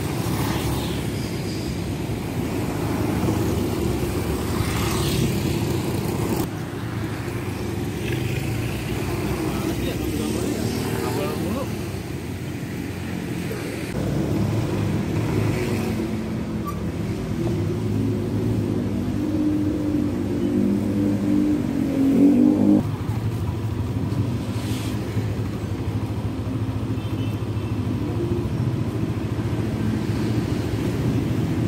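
Road traffic: car and motorcycle engines running and passing as a steady low rumble. A louder engine note cuts off suddenly about three-quarters of the way through.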